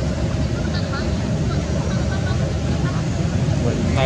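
Steady low outdoor rumble with faint, indistinct human voices in the background.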